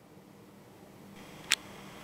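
Faint steady hiss that grows slightly louder and brighter partway through, with one sharp click about one and a half seconds in.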